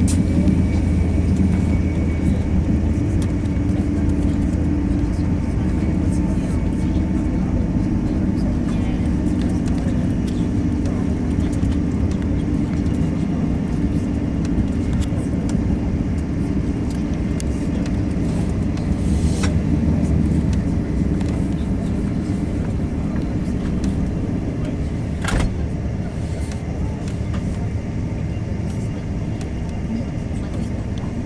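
Cabin noise inside a Thalys TGV passenger car running at speed: a steady low rumble from the wheels and running gear on the track. There are two sharp, brief clicks, about 19 and 25 seconds in.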